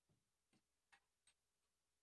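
Near silence, broken by four faint short clicks about half a second apart.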